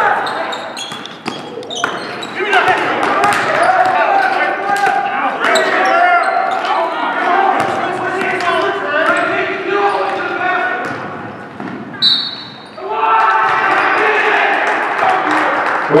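A basketball bouncing again and again on a gym floor, sharp knocks echoing in a large hall, under indistinct voices of players and spectators.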